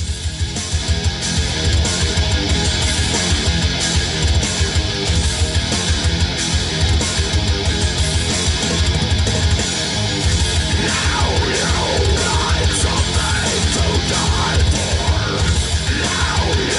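A heavy metal song playing loud through the car's factory stereo (head unit, door woofers and dash tweeters), starting abruptly: distorted guitars over a steady kick drum. Its mid-range is muddy, just mud on this system. Singing or lead lines come in over the mix about eleven seconds in.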